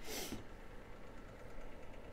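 A short breathy exhale right at the start, then a quiet room with a low steady hum.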